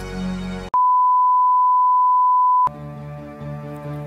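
Karaoke backing music fades, then a single steady electronic beep sounds alone for about two seconds and cuts off sharply, and slow instrumental backing music starts.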